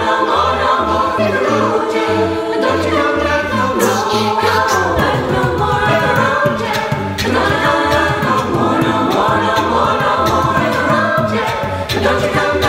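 A cappella pop choir singing in close harmony, with a sung bass line pulsing underneath and a few sharp percussive accents about four and seven seconds in.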